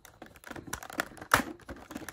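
Fingers prying a small plastic charm out of a bead kit's plastic blister tray: a run of small irregular plastic clicks and taps, the loudest a little past halfway.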